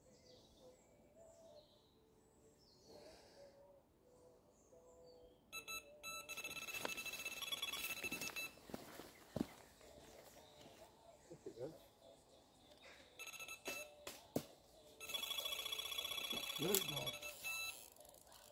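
Electronic bite alarm on a pike rod sounding in two runs of rapid beeps, one about five seconds in and another about fifteen seconds in: line being taken as a fish runs with the bait. Faint clicks and knocks of handling come between the runs.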